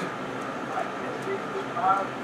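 Faint, scattered voices over a steady low hum, with a brief spoken fragment near the end.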